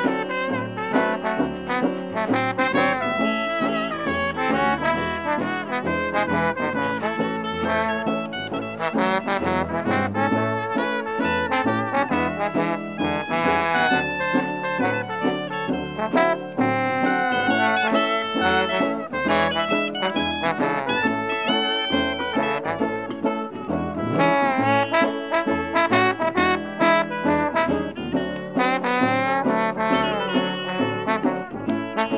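Traditional jazz band playing an instrumental blues chorus, with trumpet, trombone and clarinet over a rhythm of sousaphone, resonator guitar and banjo.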